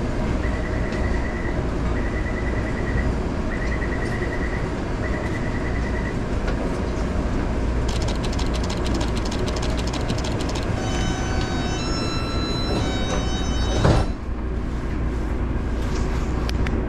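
Inside a metro train carriage: a steady low rumble, with four short pulsed electronic beeps in the first few seconds. Later comes a run of rapid clicking, then several steady electric motor tones that step up in pitch, and a single sharp thump near the end.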